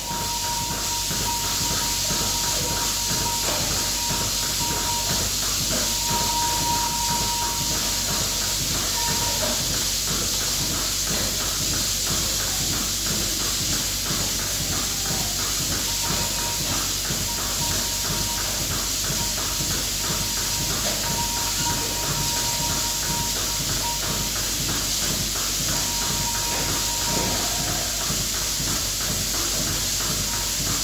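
Goat milking machine running: a steady hiss of vacuum with a rapid, even pulsing from the clusters, and a thin high tone that comes and goes.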